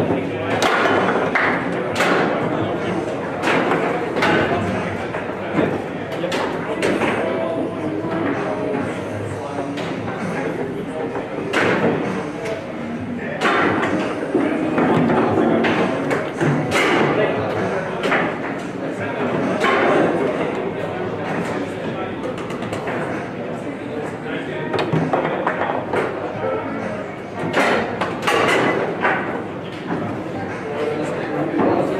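Rosengart foosball table in fast play: frequent sharp knocks of the ball against the plastic men and table walls, with rods clacking. A goal goes in partway through.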